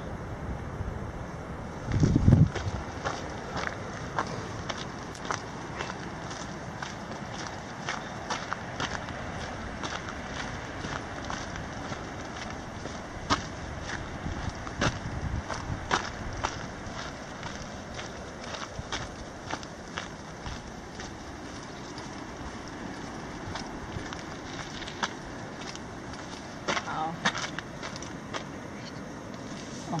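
A hiker's footsteps on a trail path, irregular short crunches and clicks over a steady outdoor hiss, with a loud low rumble on the microphone about two seconds in.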